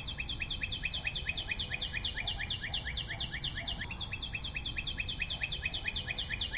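A rapid, even series of short high chirps, about seven a second, each falling slightly in pitch.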